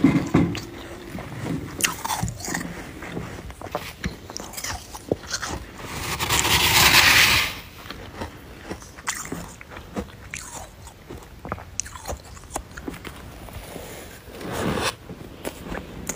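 Close-miked biting and chewing of powdery freezer frost: soft crunches and fine crackles, with one longer, louder crunching stretch near the middle and another shortly before the end.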